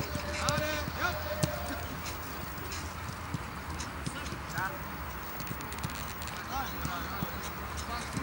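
Footballs being kicked and struck on a grass pitch, a scattered series of sharp thuds during a passing drill, with distant shouts from players.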